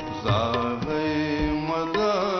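A man singing a long-held, wavering melody into a microphone over a steady sustained drone, with a few low drum strokes such as tabla beats.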